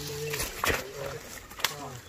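Men's voices calling out in short bursts, with a sharp knock about two-thirds of a second in and another shortly before the end.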